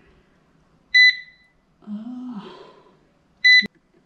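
Proscenic 850T robot vacuum cleaner beeping: two short, high beeps about two and a half seconds apart, the second followed by a light click.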